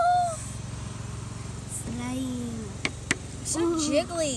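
Children's wordless vocal exclamations, drawn-out 'ooh'-like calls sliding in pitch, with two sharp clicks a little before the end, over a steady low background hum.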